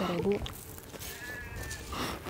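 A woman crying: a short wavering sob near the start and a higher, quavering one about a second in, with breathy sniffling between.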